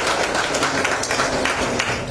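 Applause from a room audience, a dense patter of hand claps that stops at the end.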